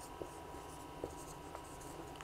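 Marker pen writing on a whiteboard: faint strokes with a few light ticks as the tip meets the board.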